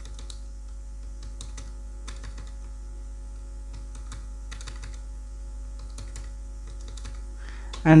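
Computer keyboard typing: short runs of key clicks every second or so as figures are entered, over a steady low hum.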